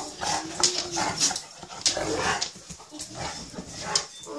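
Small dogs play-fighting on a bed: short whines and yips over scuffling on the bedding.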